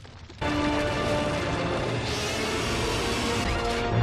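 Animated episode's soundtrack: music with crashing impact effects over it, cutting in suddenly about half a second in.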